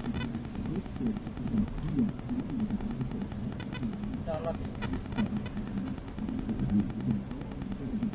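Indistinct, muffled talk over the steady low drone of a vehicle cab driving in heavy rain, with scattered light clicks and ticks.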